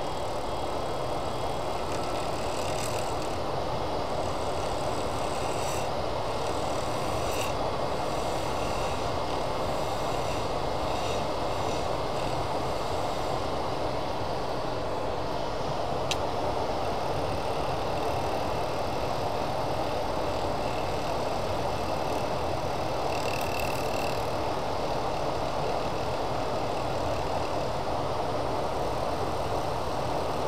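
A shop dust collector running steadily, with a wood lathe spinning and a carbide turning tool cutting into a resin-cast blank.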